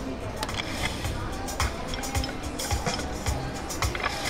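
Video slot machine game music and spin sounds over a busy casino background, with short low thumps about every half second from midway on.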